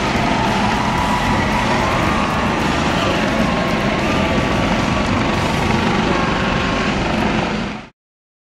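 U.S. Coast Guard HH-65 Dolphin helicopter hovering low, its rotor and turbines running steadily with a thin wavering whine over the noise. The sound cuts off abruptly near the end.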